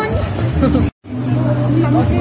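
Voices talking over a steady low hum of street noise. The sound cuts out completely for a moment just before a second in, then the hum and voices carry on.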